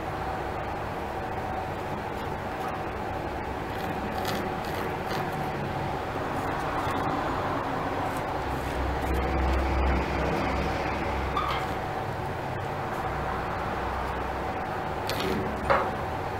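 A steady mechanical hum with several held tones, with a low rumble that swells for a couple of seconds around the middle, and a few faint clicks.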